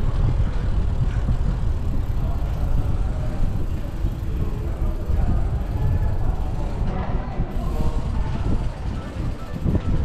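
Wind buffeting the microphone of a camera on a moving bicycle, a steady low rumble that rises and falls.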